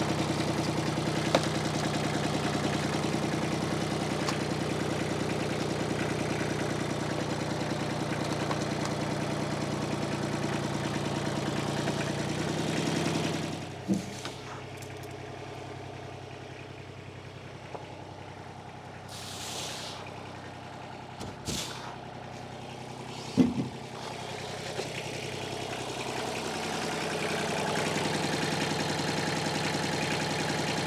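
Small tractor engine with a front loader running steadily, louder at first, then dropping away a little before halfway and building up again near the end. A sharp clunk comes a little before halfway, another louder one about three-quarters through, and a short hiss falls between them.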